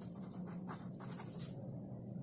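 Pen writing on paper held on a clipboard: a few faint scratchy strokes, over a steady low hum.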